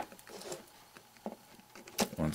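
Faint handling noise as a stereo cable's plug is fitted into a small plastic MP3 player's jack: a few light taps and rustles, with a sharper click at the end.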